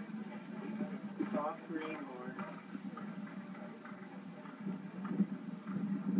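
Muffled horse-show soundtrack played through a TV speaker: indistinct voices in the first couple of seconds over a steady low hum, with faint hoofbeats of a cantering horse.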